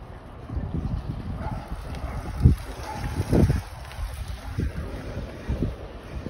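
Wind buffeting a phone's microphone: uneven low rumbling gusts, the strongest about two and a half and three and a half seconds in.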